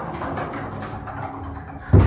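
Sliding wardrobe door rolling along its track, then shutting against the frame with a heavy thud near the end.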